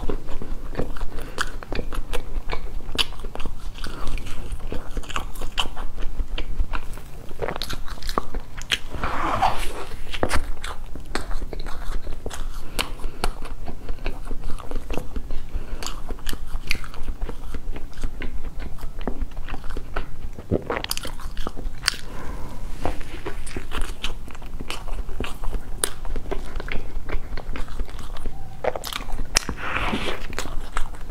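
Close-up eating sounds of a person biting into and chewing a large slice of chocolate sponge cake: many small moist clicks and mouth noises throughout. A steady low hum runs underneath.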